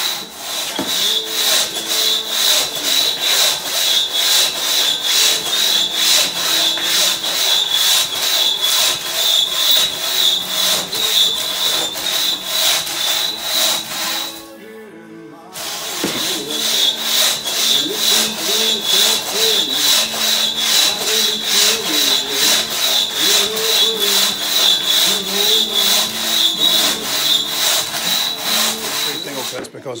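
Single-buck crosscut saw ripping through a large log with rapid, evenly spaced push-pull strokes. The sawing stops for about a second near the middle, then picks up again at the same pace.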